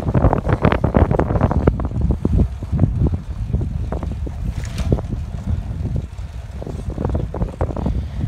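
Wind buffeting the microphone from a moving vehicle, coming in loud, irregular gusts over a steady low rumble.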